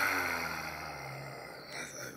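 A man's breathy, held-in laughter that starts fairly loud and fades away.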